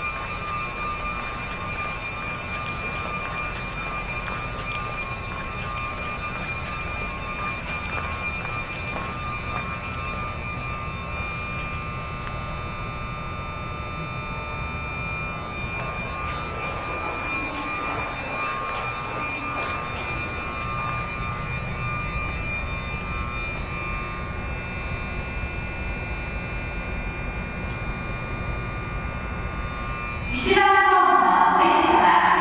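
Steady mechanical hum of an underground subway station's machinery, a low rumble with several constant high whining tones that hold level throughout.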